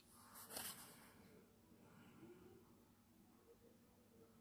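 Near silence: faint room tone, with one brief, faint noise about half a second in.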